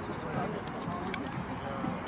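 A man's brief laugh and low talk over a steady background noise, with a sharp click about a second in.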